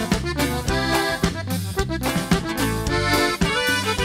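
Live norteño band playing an instrumental passage: a button accordion carries the melody over electric bass, guitar and drum kit, with a steady beat.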